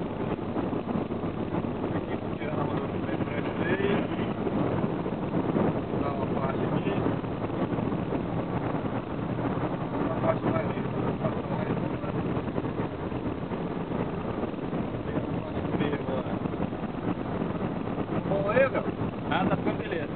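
Steady road and wind noise inside a moving car at highway speed, with faint voices in the cabin.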